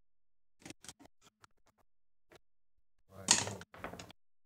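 Backgammon checkers and dice clicking on the board, a few light clicks, then a louder clatter about three seconds in as a pair of dice is rolled onto the board, with a couple more clicks as they settle.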